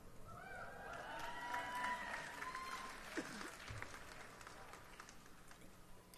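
Audience applauding with a few whoops, the clapping swelling briefly about a second in and then dying away.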